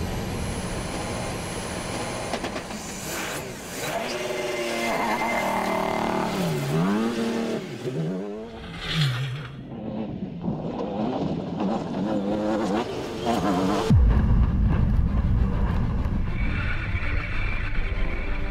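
Peugeot 2008 DKR16 rally-raid car's engine revving hard, its pitch climbing and dropping several times through quick gear changes. About fourteen seconds in it cuts to a sudden louder, deeper sound of the car driving on dirt.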